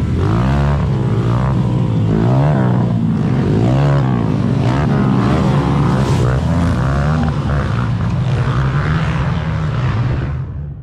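Several youth racing ATV engines revving up and down in overlapping pitches as the quads pass close by, one after another.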